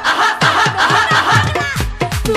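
Live Bengali baul folk music: a barrel drum (dhol) plays bass strokes that slide down in pitch, coming faster toward the end, under keyboard and quick repeated vocal notes.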